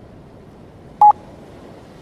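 A single short electronic beep: one steady tone lasting about a tenth of a second, about a second in, over a faint steady hiss.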